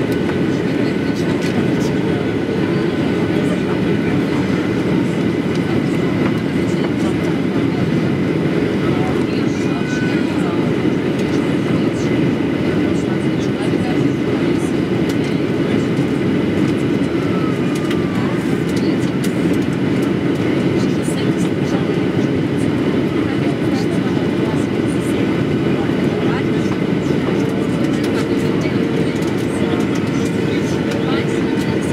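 Steady cabin noise inside a Boeing 737-800 in flight, heard from a window seat over the wing: a loud, even rumble of airflow and the CFM56 engines, unchanging throughout.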